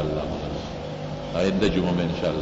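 A man's voice speaking, pausing briefly and resuming about one and a half seconds in, over a steady low hum.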